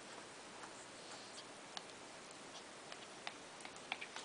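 Faint scattered clicks and crinkles of a plastic bag and a treat package as a small dog noses into them, coming more often near the end.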